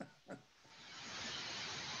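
A few short, faint breathy sounds, then a steady hiss fades in about half a second in and holds.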